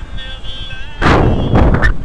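Wind buffeting the microphone of an action camera in paragliding flight, rising suddenly to loud gusting noise about a second in, with a dip near the end.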